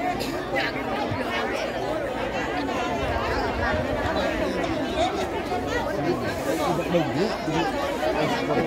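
An audience crowd chattering: many overlapping voices talking at once in a steady hubbub, with no music playing.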